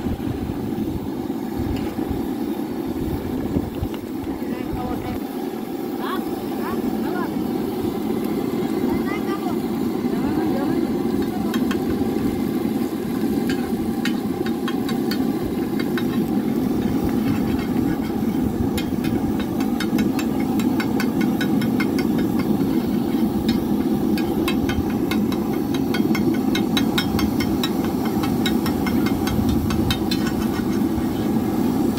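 Egg cooking on a large iron street-food griddle over a steady low rumbling noise, with quick clicks and scrapes of a slotted steel spatula chopping and stirring it, growing rapid and busy in the second half.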